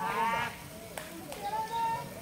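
People's voices, with a high, wavering call in the first half-second and shorter voiced calls after it.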